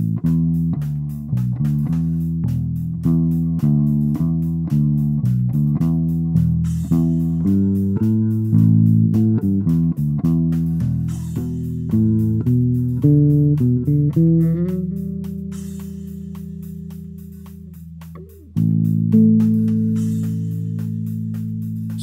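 Solo bass guitar playing a free-form bass line in A: a run of quick plucked notes, then a long held note that fades away, and a fresh note struck a few seconds before the end and held.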